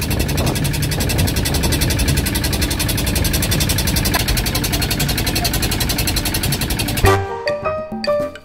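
A tourist boat's motor running steadily, with wind blowing on the microphone. About seven seconds in, this cuts off abruptly and music with wood-block percussion starts.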